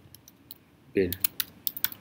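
Computer keyboard typing: a string of quick, uneven key clicks as a word is typed in.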